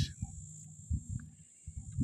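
Quiet outdoor background with a steady high-pitched insect buzz, faint low rumbles and a few soft taps.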